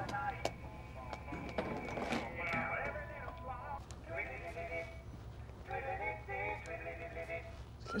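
A cell phone ringing with a song ringtone: a tinny recorded tune with singing, repeating in short phrases.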